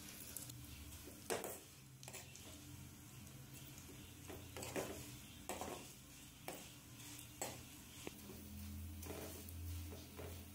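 Metal ladle scraping and knocking against a metal kadhai as thick vermicelli is stirred and toasted in hot oil, with a faint sizzle underneath. The scrapes come irregularly, roughly one a second.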